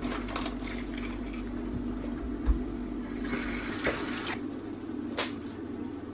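Quiet handling of a plastic packet of sponge fingers: a brief rustle about three seconds in, with a low thud and a single sharp click, over a steady low hum.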